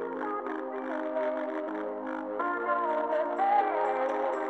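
Background music: sustained chords with a plucked, guitar-like melody on top.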